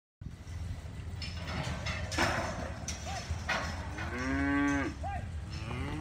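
Cattle mooing in a saleyard pen: one long moo about four seconds in, with shorter calls just before and after it, over a few knocks and the noise of the yard.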